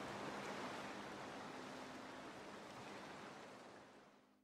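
Soft, even rush of sea surf, fading out gradually, with a faint lingering low musical note underneath.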